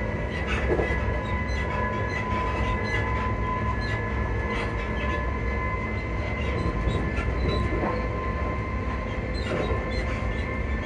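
Passenger train running at a steady speed: a continuous low rumble with a steady whine that holds its pitch, and occasional clicks and knocks from the wheels on the track.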